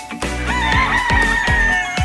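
A rooster crowing once, one long wavering call that rises at the start and ends near the close, over background music with a steady beat.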